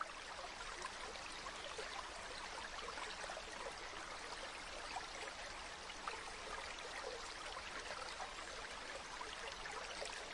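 Steady running water, like a trickling stream, with small splashy ticks scattered through it.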